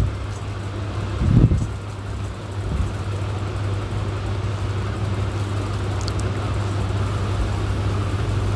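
Onion and ginger-garlic paste frying in oil in a wok, a faint sizzle over a steady low hum. A soft knock comes about one and a half seconds in.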